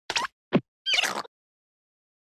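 Short cartoon sound effects: a quick plop, a plop sliding steeply down in pitch about half a second in, and a longer scuffling sound about a second in.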